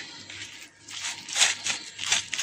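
Damp, soap-lathered cloth towels being handled and crumpled by hand in a metal bowl: a few short rustling, crumpling noises, the loudest a little past the middle.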